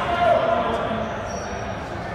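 Voices in a reverberant gymnasium, players and spectators calling out, with one loud drawn-out shout about a quarter second in.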